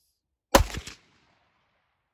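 A single 9x19mm shot from a CZ 75B pistol about half a second in: a sharp, loud report followed by a short echo that dies away within half a second.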